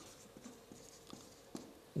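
Felt-tip marker writing on flip-chart paper: faint scratching pen strokes.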